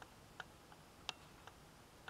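Near silence with about five faint, sharp clicks, the loudest about a second in, from a hand tool and fingers working a glued strip of burlap down onto fabric.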